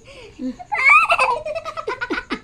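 A young girl laughing: a high-pitched squealing laugh about halfway in, breaking into quick ha-ha-ha laughter near the end.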